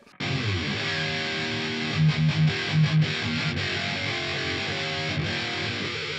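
Ibanez electric guitar played through the Otto Audio 1111 amp-sim plugin at its default setting, with its mono/stereo doubling effect engaged: a heavily distorted, high-gain metal riff. Five short, louder low chugs come two to three seconds in.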